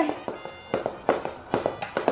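Battery-powered crawling baby doll (Baby Alive Go Bye Bye) crawling on a laminate floor: its plastic hands and knees tap the floor in a rhythm of about four taps a second as its motor drives the limbs.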